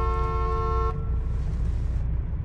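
A car horn held in one steady blare that cuts off suddenly about a second in, over the low rumble of the car's engine and road noise heard from inside the cabin.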